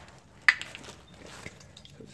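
A single sharp tap about half a second in, then faint handling noise of things being moved about.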